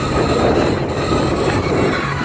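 Steady, loud noise of a pontoon boat underway: its motor hums under wind and rushing water.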